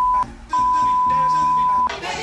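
An edited-in censor bleep: a loud, steady, single-pitched beep that breaks off briefly near the start, then sounds again for over a second, stopping just before the end, with music faintly underneath.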